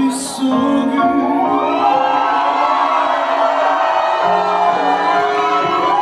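Live band accompaniment of a Korean pop ballad: sustained keyboard and string chords swelling through an instrumental passage, with a short crash right at the start.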